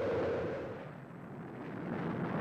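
A rushing, rumbling noise that swells, fades about a second in, and builds again.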